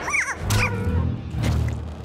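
A cartoon slug's squeaky vocal chatter: short rising-and-falling chirps at the start and again about half a second in, a sassy retort, over background music.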